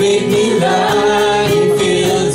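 Live worship band: several voices singing together through microphones over strummed guitar accompaniment, in a steady rhythm.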